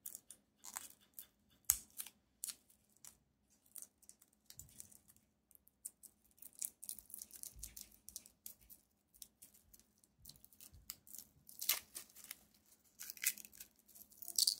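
Hand-applied wrapping being peeled and torn off a bottle of fountain pen ink: irregular crackling tears and crinkles that come in short bursts, busiest near the end.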